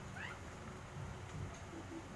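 A single short, high-pitched animal call just after the start, sliding down in pitch, over a low background rumble.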